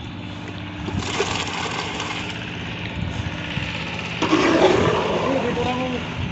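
A small engine runs steadily, with scraping and handling noise of wet concrete. Voices call out about four seconds in.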